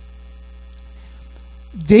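Steady low electrical mains hum from the microphone and sound system. A man's voice starts again near the end.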